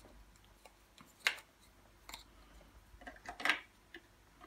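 Light plastic clicks and knocks as the replacement handle piece is handled and fitted into the Stokke Xplory's plastic handle mechanism. There is one sharper click about a second in and a small cluster of clicks near the end.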